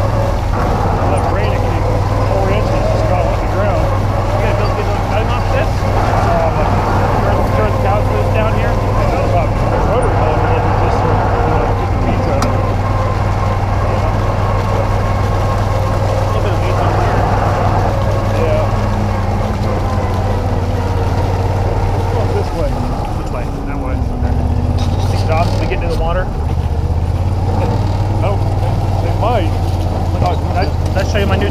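Small utility vehicle's engine running steadily as it drives, with a steady whine over the low drone. About three-quarters of the way through, the engine note dips briefly and then picks up again.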